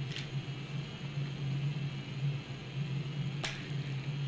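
A cardboard board-game spinner being flicked, with a sharp click about three and a half seconds in, over a steady low electrical hum.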